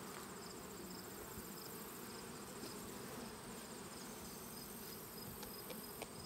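Honey bees buzzing around an opened hive, a faint steady low hum.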